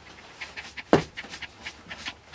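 A dog panting in quick, rapid breaths, with one louder sharp bump about a second in.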